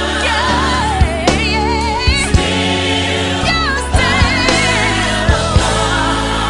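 Recorded gospel song: a sung lead vocal with wide vibrato and backing voices over sustained chords and bass, with sharp drum hits every second or so.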